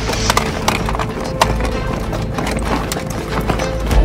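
Tense film score made of irregular percussive clicks and knocks with a faint held tone, over the low steady rumble of a moving car's cabin.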